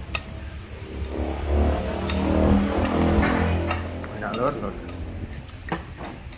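Metal spoon clinking and scraping against a plate a few times while eating, with a low, indistinct voice in the middle.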